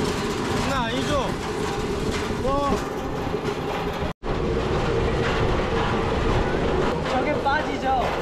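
Pedal rail bike's steel wheels rolling along railway track: a steady rumble with a constant hum and some clacking from the rails. It cuts out for an instant a little over four seconds in and then carries on, with a few short voice-like cries over it.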